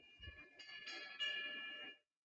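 High ringing chime tones, with new tones struck about half a second in and twice more shortly after, layering on one another, then cutting off suddenly at the end.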